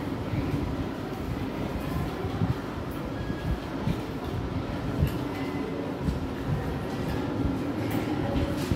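Steady low rumbling room noise with a faint even hum running through it, and a few brief soft knocks.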